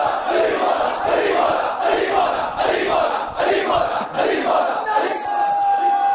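Large crowd of men shouting a slogan together in repeated rhythmic bursts, about four shouts every three seconds. Near the end a single steady held tone rises above the crowd.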